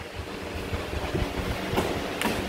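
Two jiu-jitsu players shifting and rolling on a foam mat as a half-guard sweep turns the top man over: soft scuffing of gis and bodies over a low, steady rumble, with a faint tap near the end.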